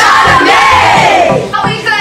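Children's group shout over a pop dance beat, one long shout sliding down in pitch over the first second and a half.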